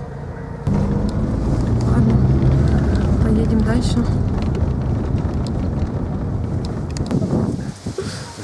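Inside a moving car: steady low engine and road rumble, with muffled voices faintly under it.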